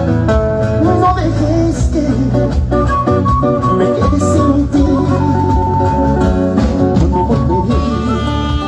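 Live band music played loud through the stage PA: an instrumental passage with guitar and saxophone carrying sustained melody lines over a steady drum beat.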